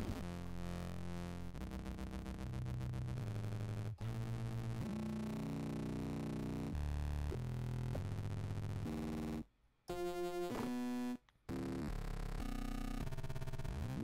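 Synthesizer tones run through Bitwig Studio's Tree Monster effect, a reactive ring modulator. The pitch jumps in steps every half second or so, and the sound cuts out briefly twice near the end.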